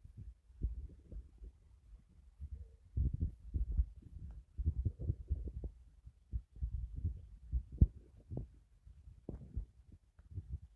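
Wind buffeting a phone's microphone: irregular low rumbles and thumps, with one sharp thump about eight seconds in.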